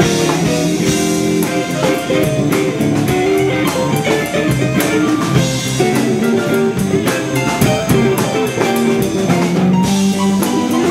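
Live blues band playing an instrumental passage: electric guitars over a drum kit keeping a steady beat, with no vocals.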